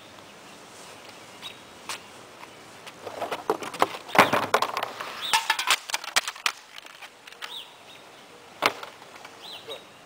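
Plastic wheeled trash bin and an aluminium soda can clattering, a cluster of knocks and rattles in the middle, as the can is thrown into the bin. Birds chirp briefly a few times over quiet outdoor background.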